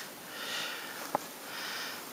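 A cat grooming itself at close range: soft sniffing breaths about once a second, with one short sharp click about a second in.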